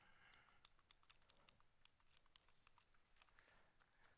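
Near silence with faint, irregular clicking of buttons or keys being pressed, as a presentation clicker and laptop are fiddled with to get the slides to advance.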